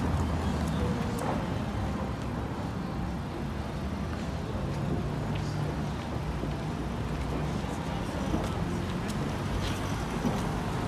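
Transit bus and the surrounding cars idling in stopped traffic: a steady low engine hum under a faint street haze.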